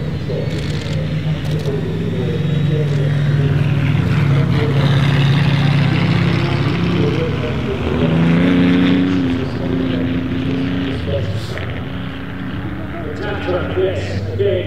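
Classic cars' engines running as they drive on an ice track, one engine revving up with a rise in pitch about eight seconds in, then easing off.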